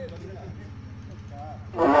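A steady low electrical hum runs under faint, scattered voices of players and onlookers. A man's loud voice over the loudspeakers breaks in near the end.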